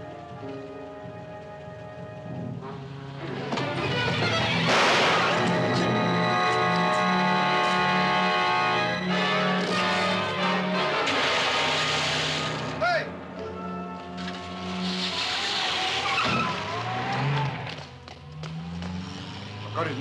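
Film score music with held chords, swelling loud about four seconds in. In the second half a car pulls away with engine noise and a brief tyre squeal under the music.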